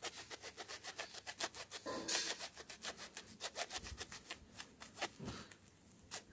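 A small knife sawing through the strands of a thick twisted natural-fibre rope: a fast run of short rasping strokes, about seven a second, with a louder scrape about two seconds in. The frayed, broken end is being cut back before the rope is spliced.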